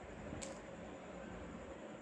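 Low, steady background hiss with a faint steady hum, and a single faint click about half a second in.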